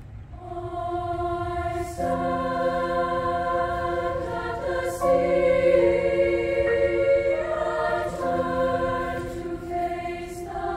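Treble choir singing held chords with piano accompaniment, starting a moment in. The chords change about two, five and eight seconds in.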